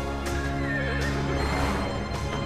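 Background music with held notes, and a horse whinnying briefly about half a second in.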